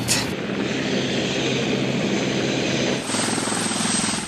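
Steady drone of an aircraft engine, with a low hum and a fine, even pulsing.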